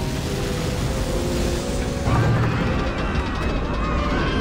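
Film sound of a sinking ocean liner breaking up: a heavy, continuous rumbling crash under music, with many high wailing screams from about two seconds in.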